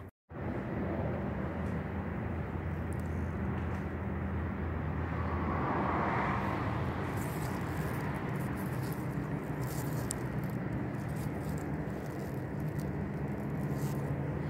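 Steady low mechanical hum and rumble, like an engine or traffic running nearby, swelling briefly about six seconds in.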